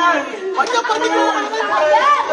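A group of people talking and shouting over one another in excited, overlapping chatter.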